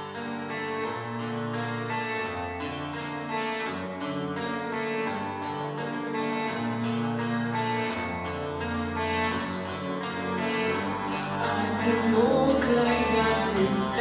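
Instrumental introduction to a song: picked acoustic guitar in an even, steady pattern over sustained chords. A singing voice enters near the end.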